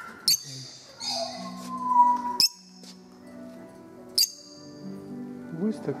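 Small parrots giving a few short, sharp, high chirps spaced a second or two apart, over steady background music.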